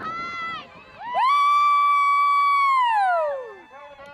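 A spectator's high-pitched cheering yell: a short call, then one long held shout of about two seconds that falls in pitch at the end, urging on the passing riders.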